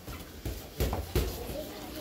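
Kicks landing on Muay Thai strike pads: three sharp slaps about a third of a second apart, with voices of the class behind.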